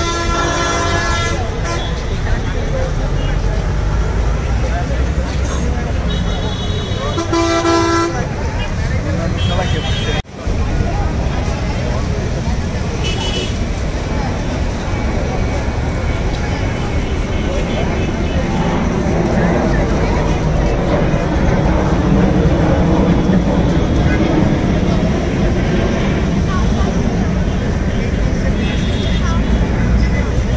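Busy road traffic with vehicle horns honking: a long horn blast at the start and another about seven seconds in, with a few shorter toots later, over steady engine noise and crowd chatter.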